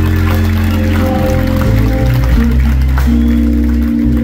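Live rock band playing held chords over a deep bass line that shifts note every second or so.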